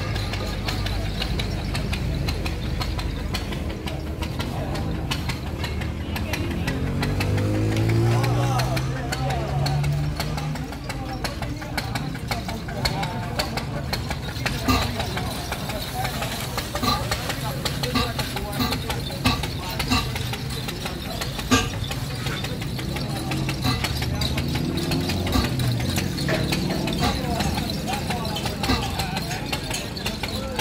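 Truck engine idling, rising once in a steady rev about seven seconds in and settling again, with people talking and occasional sharp clicks.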